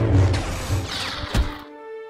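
Lightsaber clash and swing sound effects over dramatic background music, with a sharp hit and a quick swoosh about a second and a half in. After that the effects drop away, leaving a held music chord.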